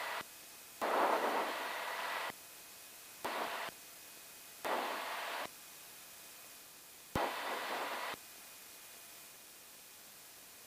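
Aircraft radio static heard through the headset feed: four bursts of hiss with no voice, each half a second to a second and a half long, starting with a click and cutting off sharply as the receiver's squelch opens and closes.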